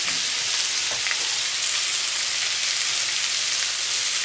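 Sausage slices and boiled potatoes frying in a pan, a steady sizzle with a few faint ticks.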